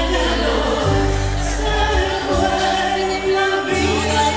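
Live Latin band music with a female singer leading, over bass guitar and congas; the bass holds long notes that change every second or so.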